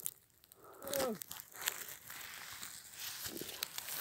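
Footsteps crunching in fresh snow, a soft crackly scuffing with small clicks, with a short vocal sound from one of the men about a second in.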